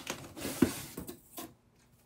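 A hand rummaging in a cardboard box, rustling paper and cardboard inserts, with a sharp knock against the box a little over half a second in and a lighter click shortly before it goes quiet.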